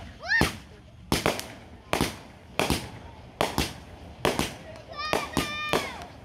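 Fireworks going off: a steady run of sharp bangs, about two a second.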